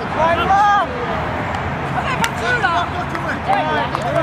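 Players shouting calls to one another during an ultimate frisbee game, loudest in the first second, with one sharp click a little after two seconds in.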